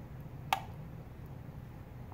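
One short clink about half a second in: a metal spoon striking a metal baking pan while spreading sauce. A low steady hum runs underneath.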